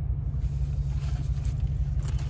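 Low, steady rumble of a truck engine running, with a slight pulsing and little else above it.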